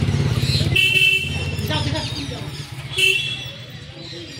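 Street traffic: a motor vehicle engine runs close by and fades away after about a second, with short horn toots about one second and three seconds in.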